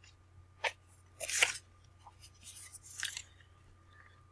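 Pages of a paperback guidebook being flipped by hand: a few short paper rustles and flicks.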